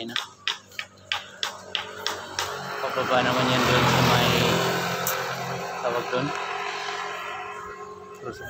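Music with a beat for the first couple of seconds, then a motor vehicle passing close by: its engine and tyre noise swell to a peak about four seconds in and fade away.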